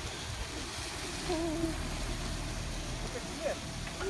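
Jeep Wrangler Unlimited Rubicon's engine running low and steady as it crawls slowly over uneven ground, with faint voices in the background.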